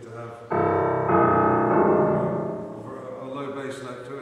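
Grand piano: a loud chord struck about half a second in and another just after a second in, both ringing on and dying away over the next two seconds.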